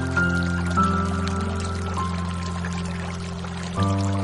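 Slow, soft piano music: sustained notes and chords, with new notes struck about a second in and two seconds in and a new chord near the end. A steady sound of flowing water runs underneath.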